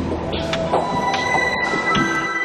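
Ambient electronic music: several sustained high tones held over a low drone, with short swishing accents scattered through it.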